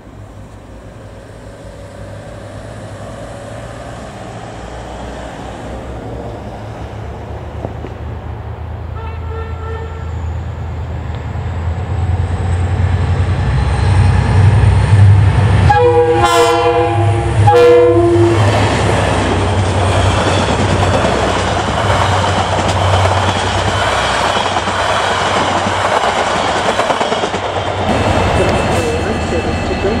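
KiwiRail diesel locomotive approaching, its engine drone growing steadily louder. A faint horn blast sounds about a third of the way in, then two loud horn blasts about halfway, and the train passes with a rising rush of wheel and rail noise.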